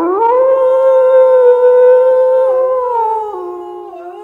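A man singing one loud, long held high note in imitation of a singer's signature high note. The note holds steady for about two and a half seconds, then steps down in pitch twice and grows quieter toward the end.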